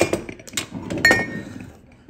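Clear dimpled drinking glasses clinking against each other: three clinks, the loudest about a second in, each ringing briefly.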